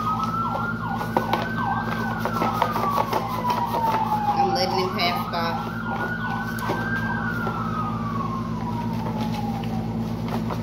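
Emergency vehicle sirens: a slow wail that rises for about two seconds and falls for about three, twice over. A faster yelping siren overlaps it for the first half, then stops. Close by, cards and a cardboard box rustle and click over a steady low hum.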